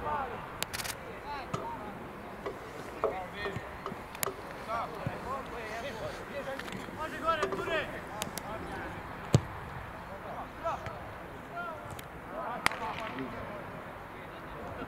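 Players' shouts and calls across an open football pitch, with a few sharp knocks of the ball being kicked; the loudest knock comes about nine seconds in.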